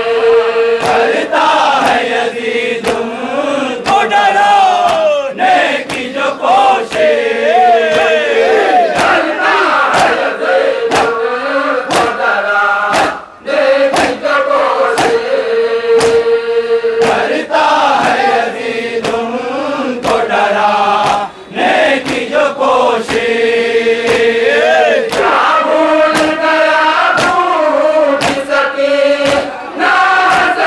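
A crowd of men chanting a nauha (mourning lament) together, led by one voice, with sharp, evenly spaced strikes of hand-on-chest matam beating time about twice a second. The chant and beats drop out briefly twice.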